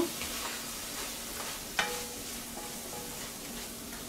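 Chopped tomatoes and onions sizzling in a stainless steel frying pan while a spatula stirs them, with a single sharp tap a little under two seconds in.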